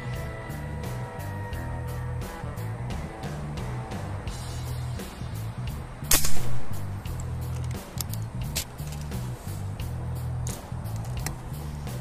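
Background music with a steady beat; about six seconds in, a single sharp shot from a regulated 500cc PCP air rifle in 4.5 mm calibre.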